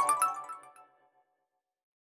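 Closing notes of a production-logo music sting: a quick run of bright, chime-like notes that dies away within the first second.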